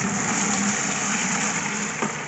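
Watery fish-and-egg slurry pouring in a heavy stream from a plastic container into a large plastic jar: a steady splashing gush.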